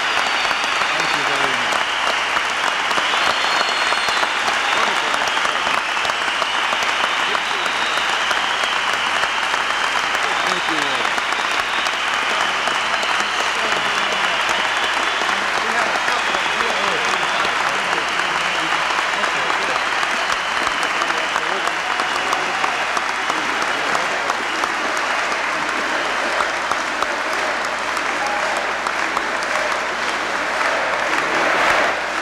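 A large audience applauding steadily: a sustained ovation at the end of a speech, with scattered voices mixed into the clapping.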